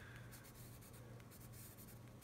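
Faint scratching of a Tombow Irojiten colored pencil drawing on workbook paper, in short irregular strokes, over a low steady hum.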